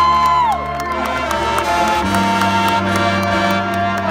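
Marching band playing sustained brass chords over percussion hits. A high held note slides down and drops out about half a second in, and the low chord shifts about two seconds in.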